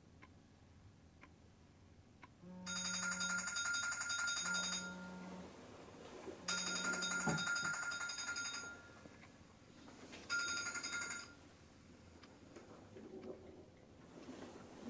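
Phone ringing in three bursts of a rapid, high trilling ring, starting about two and a half seconds in; the first two last about two seconds each and the third is shorter. A low steady buzz sounds under the first two bursts.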